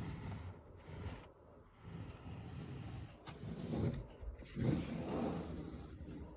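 Paper pages of a colouring book being handled and turned, rustling in several swells.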